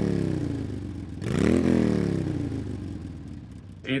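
An engine revving twice, each rev climbing quickly in pitch and then dying away slowly over a couple of seconds.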